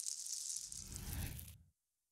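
Logo-animation sound effect: a hissing, rattling rush like a mass of small pieces tumbling together, with a low rumble swelling in about halfway through. The whole sound cuts off suddenly near the end.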